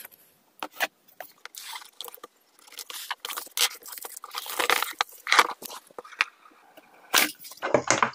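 Shrink-wrap plastic film being slit with a knife and pulled off a cardboard phone box, with the lid lifted off: irregular crackles, scrapes and clicks.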